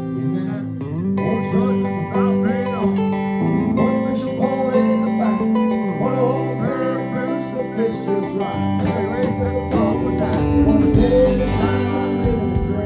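Live country band playing: strummed acoustic guitar over electric bass, with a man singing. Steady cymbal ticks come in from about nine seconds in.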